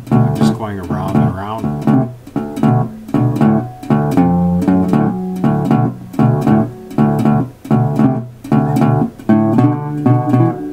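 Resonator guitar in open D tuning played fingerstyle with picks and a slide: a swing-eighth shuffle with a steady, repeated bass note under the melody. In the first couple of seconds the slide glides the notes up and down in pitch, then the rhythm settles into evenly plucked notes.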